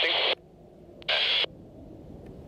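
Air-band radio transmissions: a narrow-band radio voice cutting off just after the start, then a short burst of radio sound about a second in, over faint low background rumble.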